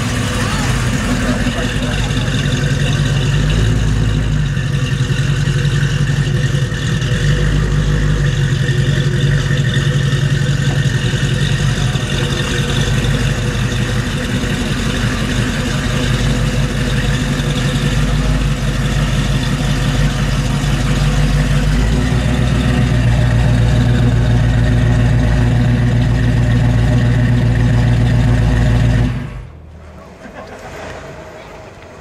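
Engine of a second-generation (1970–73) Chevrolet Camaro running at low speed as the car rolls slowly by, a steady deep rumble with slight changes in throttle. The sound cuts off abruptly near the end.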